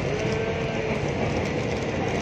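Steady running noise heard inside the cabin of a moving electric commuter train (KRL), with a faint whine that sags slightly in pitch.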